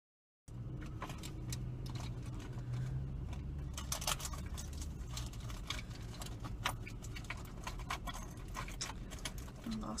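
Small clicks and rattles of objects being handled as a dropped ring is searched for down by a car seat, over a steady low hum in the car cabin. The sound cuts in about half a second in, and the clicking grows busier from the middle on.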